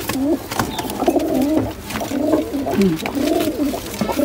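Domestic pigeons cooing over and over in low, rolling calls, with a few sharp wing flaps and knocks as a bird flutters.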